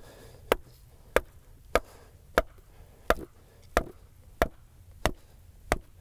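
Wooden mallet driving a wooden reference stake into the ground: about ten steady, evenly spaced blows, a little under two a second.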